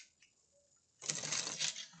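A deck of cards being shuffled by hand: a quick run of papery clicks and rustling that starts about halfway through and lasts just under a second.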